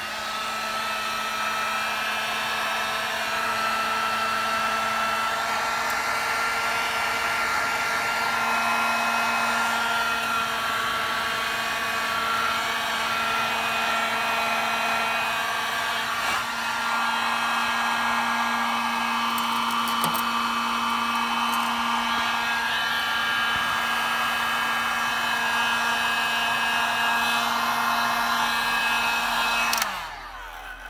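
Hot-air heat gun running steadily, a motor hum over a blowing hiss, shrinking a ring cut from a plastic bottle onto a shock absorber's metal spring-cover tube. It is switched off right at the end.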